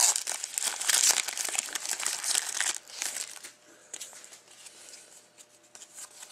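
Foil wrapper of a trading-card pack being torn open and crinkled, dense and loud for about the first three seconds, then fainter rustling with a few light clicks as the cards are handled.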